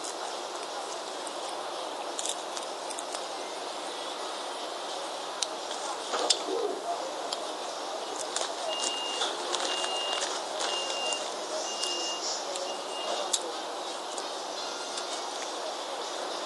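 A Sony digital voice recorder playing back a recording through its small speaker: a steady hiss of background noise with scattered clicks, and about halfway through, five evenly spaced short high beeps.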